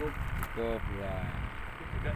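A man speaking a couple of short words over a steady low rumble.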